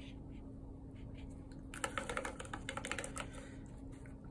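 A quick run of light clicks and taps from a paintbrush being handled against hard painting supplies, lasting about a second and a half from about two seconds in, over a faint steady hum.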